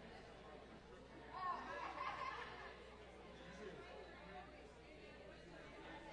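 Faint, indistinct chatter of several people talking at once in a large room, with one voice louder about a second and a half in.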